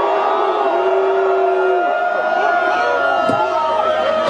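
Large concert crowd shouting and cheering, many voices overlapping and some yells held long.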